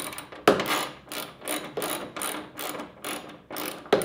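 Hand ratchet with a 10 mm socket clicking in short runs, a few strokes a second, as it drives a factory bolt into a hood strut's lower mount.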